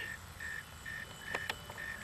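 Faint, evenly spaced short high beeps, about two a second, from the sonic alarm on the high-power rocket's electronics as it hangs under its parachutes.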